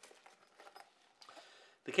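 Faint rustling and small handling sounds of a soft fabric carry pouch and a plastic-bagged lens cloth being moved by hand on a tabletop.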